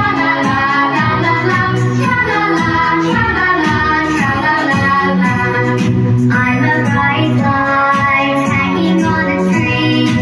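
A children's Christmas song: a child's singing voice over backing music with a regular beat.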